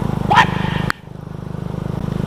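Honda CBR150 sport bike's single-cylinder engine running on the move. A little under a second in there is a sharp click and the engine sound drops off suddenly, then builds back up steadily over the next second.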